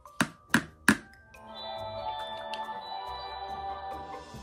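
Magic Mixies toy cauldron giving its tap-tap-tap cue, three sharp taps about a third of a second apart in the first second, the signal that the potion is ready. After a brief pause it starts playing electronic music of several held tones.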